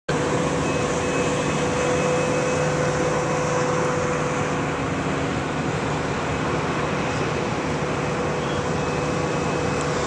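A steady machine drone: an even rushing noise with a constant hum that does not change.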